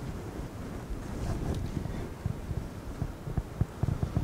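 Microphone noise: a low rumble with soft, irregular low thumps that come more often in the second half.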